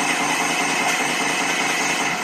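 Cartoon handgun firing in a very fast, unbroken string of shots, a loud, steady gunfire sound effect, heard through a TV's speaker.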